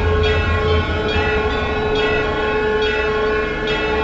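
Dramatic background score: a sustained, held chord of several pitches over a low rumble.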